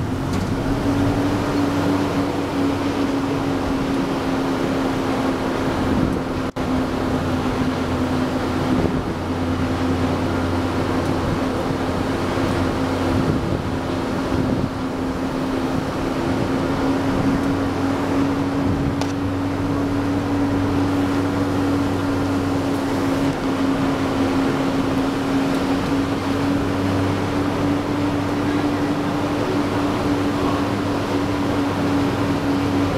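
A minibus running, heard from inside the cabin: a steady engine drone holding one pitch, with road and wind noise beneath it.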